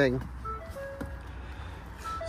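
Electronic chime in a Ford F-150 Lightning cab: a few short notes of different pitches played as a little melody, over a steady low hum.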